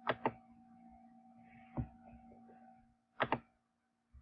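Computer mouse clicks: a quick pair at the start, a single click a little before two seconds, and another quick pair about three seconds in, over a faint steady hum.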